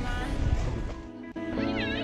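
Background music. The track thins out briefly midway, and a short wavering high-pitched sound comes near the end.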